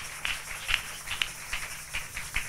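Irregular light taps and clicks, a few to the second, with a low steady hum beneath.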